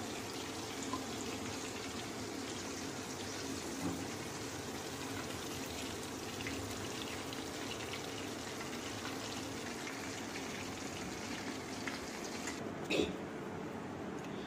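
Hot oil sizzling steadily as breaded minced-chicken balls deep-fry in a pan. Near the end the sizzle stops and there is a single short knock.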